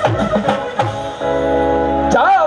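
Live band music: drum strokes from the dhol and drum kit for about a second, then the band holds one sustained chord with a low bass note.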